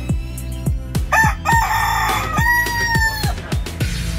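A Thai bantam rooster crows once, starting about a second in: a rough opening, then a long held note that drops slightly as it ends. Background music with a steady drum beat plays underneath.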